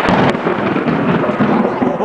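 Close thunder, really loud: a sharp crack right at the start, then a heavy rumble that runs on.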